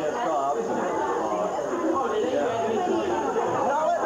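Many people talking at once: the steady, unbroken chatter of a packed party crowd, with no single voice standing out.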